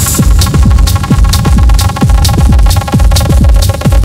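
Techno music from a DJ mix: a pulsing kick drum and a hi-hat hitting about twice a second over sustained synth tones.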